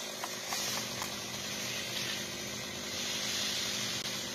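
Chainsaw engine idling steadily after being revved, with a few faint ticks in the first second.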